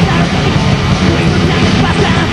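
Heavy metal band playing live, loud and distorted, with a singer's vocals over electric guitars, bass and drums.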